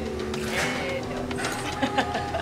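Pisco trickling from a bottle's pour spout into a steel jigger, under steady background music, with a sharp click at the end.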